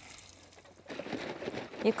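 Plastic tank of a motor blower sprayer being handled as its cap is put on over the freshly poured insecticide solution: a rough rustling and scraping noise that starts about a second in.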